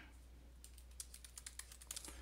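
Faint computer keyboard typing: a quick run of keystrokes starting about half a second in, over a low steady hum.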